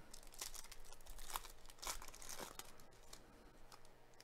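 Plastic wrapper of a 2021 Bowman's Best baseball card pack being torn open and crinkled by hand. It makes a faint run of irregular crackles and rips that thins out after about two and a half seconds.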